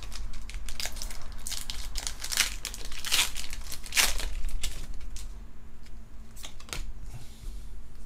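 A foil Pokémon booster pack wrapper being torn open and crinkled by hand: dense, irregular crackling, loudest in the first half and thinning out after about five seconds.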